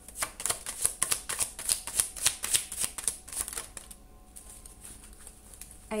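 Tarot deck shuffled by hand: a quick run of crisp card slaps and flutters, several a second, that stops about two-thirds of the way through.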